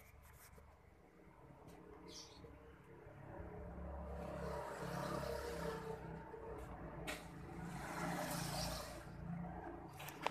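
Motor vehicles passing on a road. The engine rumble and road noise swell and fade twice, loudest about five seconds in and again near eight and a half seconds, with a brief high chirp about two seconds in.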